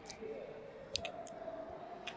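Clicks and rubbing from a clip-on microphone handled at a shirt collar: a few sharp clicks, one near the start and two about a second in, with a faint steady tone behind them.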